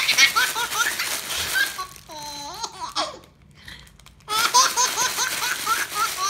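A baby laughing in repeated bursts while a clear plastic wrapper is crinkled close to the microphone. There are two bouts of crinkling and laughter, with a short drawn-out voice between them about two seconds in.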